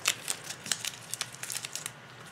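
Bubble-wrap packing and taped plastic card holders being handled, giving a run of light crinkles and crackling clicks.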